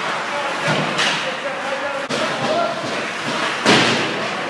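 Ice hockey play in a rink: a few sharp knocks and thuds of puck, sticks and players against the boards, the loudest near the end, over an undercurrent of voices.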